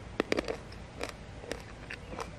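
A cucamelon being picked off the vine and eaten: a quick cluster of crisp snaps and rustles, then a few single crunches about half a second apart.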